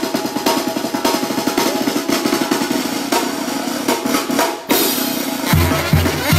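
A brass band of trombones and trumpets playing over a drum kit, with fast, dense snare drumming prominent. Near the end the sound cuts abruptly to another passage carrying a heavy low beat about three times a second.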